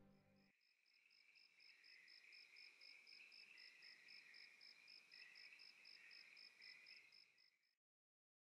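Faint crickets chirping steadily, about five chirps a second, cutting off suddenly near the end.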